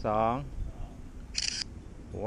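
A single camera shutter click, short and crisp, about a second and a half in.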